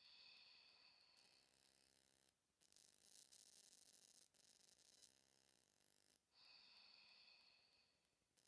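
Near silence, with very faint, slow breathing in and out.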